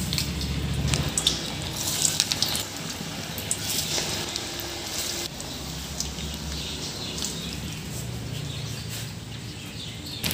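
Noodle bonda batter balls deep-frying in hot oil in an aluminium kadai: a steady sizzle with frequent small crackles and pops, busiest in the first few seconds.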